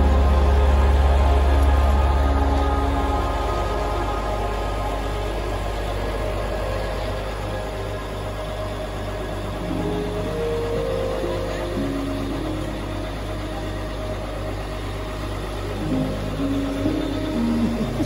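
Slow, sombre background music with held notes, over the low steady drone of an idling coach bus engine.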